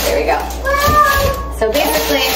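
A young child's high-pitched, drawn-out whine, one long call of about a second, amid talk.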